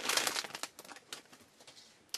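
A trading-card pack's wrapper crinkling and the cards rustling in the hands as the pack is opened, thinning out and falling nearly quiet about a second in.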